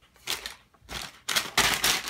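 A paper bag rustling and crinkling as it is handled, in several bursts that grow loudest in the second half.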